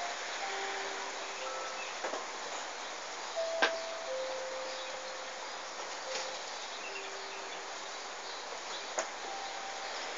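Steady rain falling on a street, an even hiss, with a few sharp clicks about two, three and a half and nine seconds in and faint short steady tones now and then.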